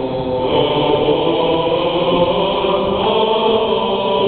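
Choir singing a Bulgarian Orthodox hymn unaccompanied, holding long sustained chords that move to a new chord about half a second in.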